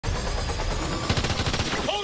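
Rapid automatic gunfire over a loud, dense action sound mix, with a man's shout starting near the end.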